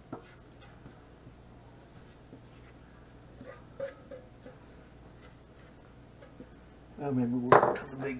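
Rubber spatula scraping batter from a stainless mixing bowl into a cast iron skillet: faint soft scrapes and light taps. A man's voice starts about a second before the end.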